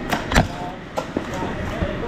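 A few sharp clacks of foam dart blasters firing, the loudest about a third of a second in and a couple of quieter ones about a second in, with faint voices behind.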